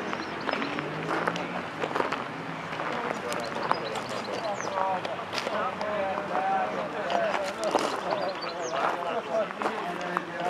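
Indistinct voices of people talking, with scattered crunching steps on gravel.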